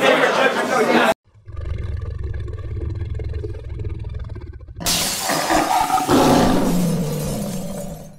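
Logo sting: a deep rumble, then a lion's roar sound effect bursting in about five seconds in and fading out near the end. A man's voice is cut off about a second in.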